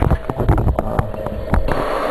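Electric startup blower of a charcoal gasifier running with a steady whine as it draws air through the charcoal bed, under a string of sharp clicks and knocks of handling. A hiss comes in about one and a half seconds in.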